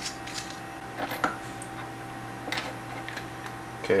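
A few light clicks and knocks of rechargeable batteries being slid into a metal flashlight tube and the flashlight being handled, over a steady low hum.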